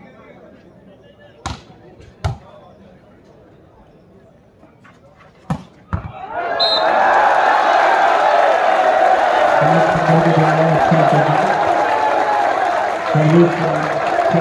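A volleyball being struck during a rally: four sharp smacks, two early on a second apart and two in quick succession just before six seconds. Then, about six and a half seconds in, a crowd breaks into loud, sustained cheering and shouting, with men's voices calling out over it.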